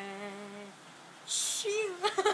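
A young woman's unaccompanied voice holding the song's final low note, steady and fading out within the first second. Near the end, a short hiss and then a brief bit of voice.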